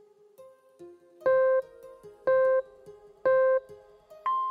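Workout interval timer giving three short, identical beeps one second apart, over soft background guitar music. The beeps count down the last seconds of a rest break to the start of the next exercise.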